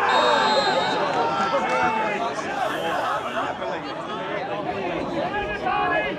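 Voices of football spectators and players on the pitch talking and shouting over one another, with a short steady high tone near the start.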